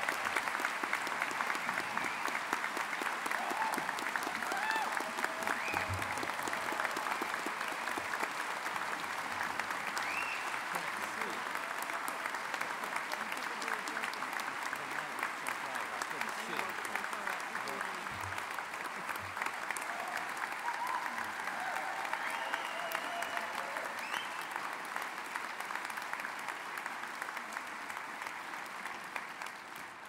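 A large audience applauding steadily for about half a minute, with a few voices calling out over the clapping. The applause fades away just before the end.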